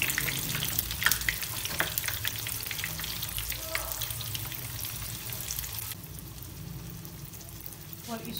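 Breadcrumb-coated chicken-and-potato shami kababs shallow-frying in hot oil in a pan: a dense crackling sizzle with sharp pops. The oil has been heated well to brown the coating quickly. The sizzle eases off gradually and turns abruptly duller and quieter about six seconds in.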